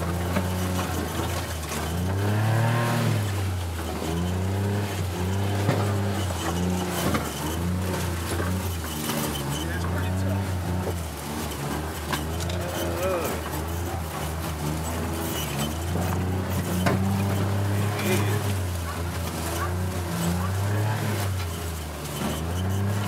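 Gator utility vehicle's engine running steadily as it drives over rough woodland ground, its pitch rising and falling several times with the throttle. Scattered knocks and rattles come from the body jolting over bumps.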